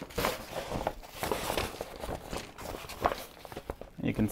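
Woven fabric laundry bag rustling and scuffing irregularly as it is handled and opened by hand.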